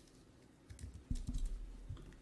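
Typing on a computer keyboard: a quick run of keystrokes starting a little under a second in.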